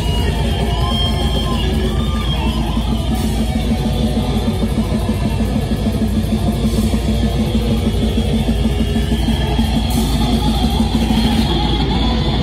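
Death metal band playing live: distorted electric guitars, bass guitar and a drum kit, loud and dense, without a break.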